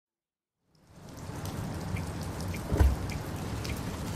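Rain falling on a car, heard from inside the cabin. It fades in over the first second to a steady hiss with single drops ticking, plus one dull thump a little before the end.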